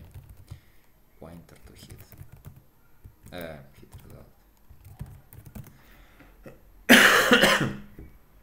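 Computer keyboard typing in short runs of key clicks, with a loud cough about seven seconds in.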